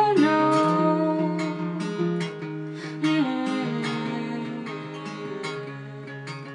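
Tanglewood acoustic guitar strummed in an instrumental passage, chords ringing between regular strokes and growing gradually softer.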